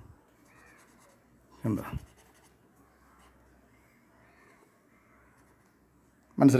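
Faint scratching of a black marker pen on paper as a moustache is drawn in short strokes, with a brief voiced sound from the person about two seconds in.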